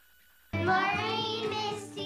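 Near silence, then about half a second in a chorus of children's voices starts suddenly, chanting in sing-song unison with music.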